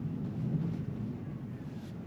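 Steady, low in-cabin road and tyre hum of a Tesla electric car rolling slowly along a narrow road, with no engine note.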